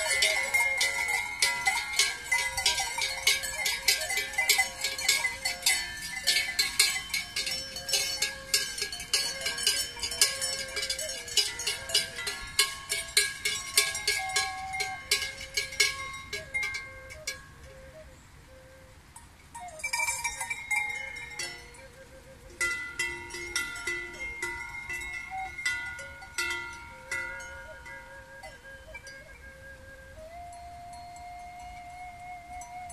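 Cowbells on a herd of cattle clanging irregularly as the cows walk downhill. Dense and fast for about the first two-thirds, then thinning to occasional clanks as the herd slows.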